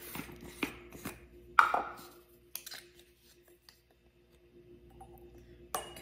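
A few sharp clicks and knocks of a plastic spice-jar lid being twisted off and set down and a measuring spoon tapping in the jar, the loudest knock about one and a half seconds in.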